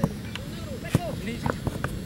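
Players and onlookers shouting across a soccer pitch during play, several voices overlapping, with a few sharp knocks, one right at the start and others about a second in and later.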